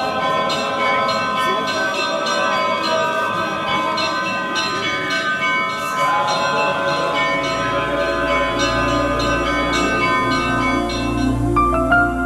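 Church bells ringing, many overlapping strikes with long ringing tones. About seven seconds in, a low steady drone joins them.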